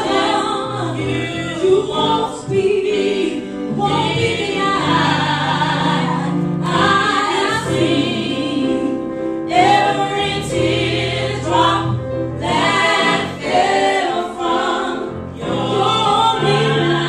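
Three women singing a gospel song together in harmony into microphones, in sung phrases of a few seconds each, with piano accompaniment.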